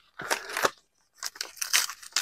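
Paper envelope rustling and crinkling as it is handled and opened, in two spells with a short pause about a second in.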